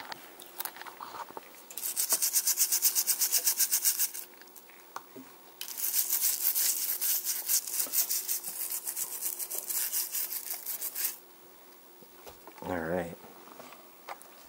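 A small bristle brush scrubbing a die-cast Hot Wheels car in a tub of baking-soda solution, in rapid back-and-forth strokes of about seven a second. The strokes come in two bouts: a short one about two seconds in, and a longer one from about six seconds to eleven.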